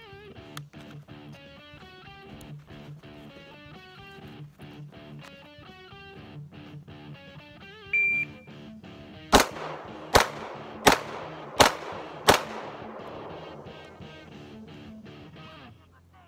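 A shot timer's short high start beep, then five pistol shots about 0.7 s apart, the string finished inside the five-second par. Guitar background music plays throughout.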